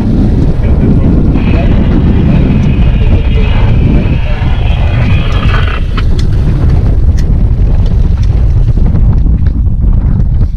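Strong wind buffeting the microphone aboard a small boat moving through choppy sea, with the rush of water and boat noise underneath.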